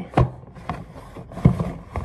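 Gift-set packaging holding mini spray bottles being handled and pulled at while the bottles are worked loose: three sharp clicks with rubbing and rustling between them.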